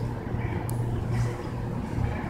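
Low steady engine drone of an approaching Tri-Rail diesel train, still some way off, with a single sharp click about two-thirds of a second in.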